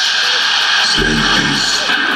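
Loud, steady hall noise of voices and music, with a voice coming in about a second in that the speech recogniser could not make out as words.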